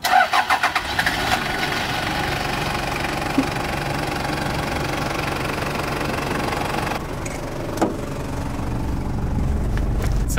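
Toyota Land Cruiser Prado KZJ78's 1KZ-TE 3.0-litre turbodiesel four-cylinder cranking and catching within about the first second, then idling steadily with a typical diesel noise.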